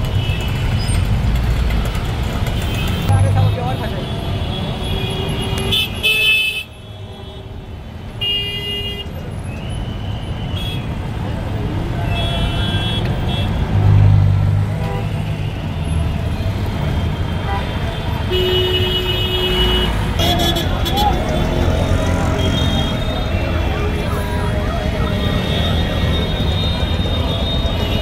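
Street traffic jam: idling vehicle engines and a crowd's voices, with short vehicle horn toots sounding again and again.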